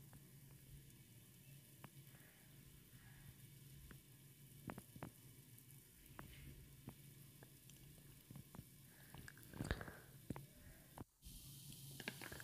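Very faint sizzling with scattered small pops from vegetables cooking in a lidded frying pan, over a low steady hum.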